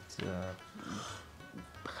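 A man's speech breaking off briefly: a short voiced sound just after the start, then a soft breathy hiss in the middle, before his voice picks up again near the end. Quiet background music runs underneath.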